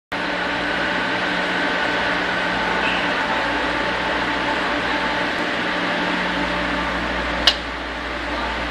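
Steady, loud machinery hum with several constant tones over a noise bed, like running ventilation or machinery in a large enclosed space. A single sharp click comes about seven and a half seconds in.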